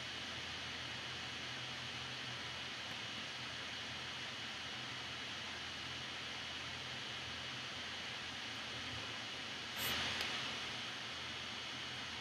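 Steady recording hiss with a faint low hum, a pause in a narrated lecture; a brief soft rustle just before ten seconds in.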